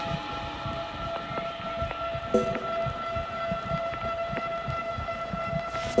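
Breakdown in a breakbeat house track: the drums drop out, leaving several held steady tones with scattered soft low hits and a short burst of hiss about two and a half seconds in. A noise swell at the end leads back into the full, loud beat.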